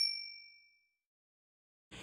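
The fading ring of a bright, bell-like ding sound effect, a few high clear tones dying away within about the first second, then silence.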